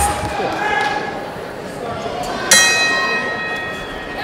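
Boxing ring bell struck once about two and a half seconds in, ringing out with several tones and fading: the signal that round three is starting.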